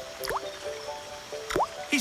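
Background music of held notes, with two water-drop plinks that each rise quickly in pitch, about a quarter second in and about a second and a half in.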